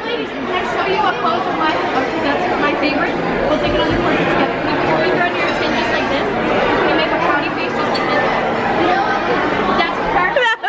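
Restaurant dining-room chatter: many voices talking over one another at a steady level.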